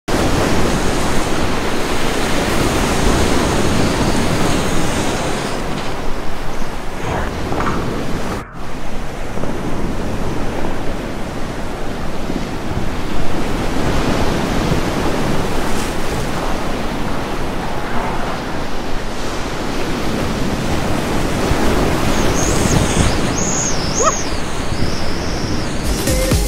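Whitewater rapids rushing and splashing close around a kayak as it runs a river rapid: a loud, steady roar of turbulent water. The sound drops out briefly about eight and a half seconds in, and faint high wavering tones come through near the end.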